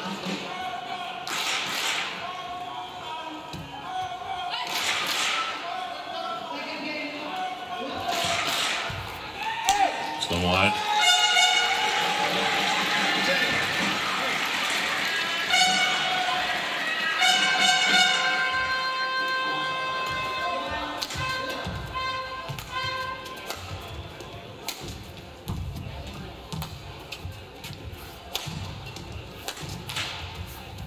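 Badminton racket strikes on a shuttlecock, sharp knocks a few seconds apart. From about ten seconds in, a run of held, horn-like tones with music plays for around twelve seconds over the hall's noise. Then more quick knocks come as play resumes.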